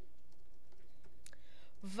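Typing on a laptop keyboard: a few scattered key clicks.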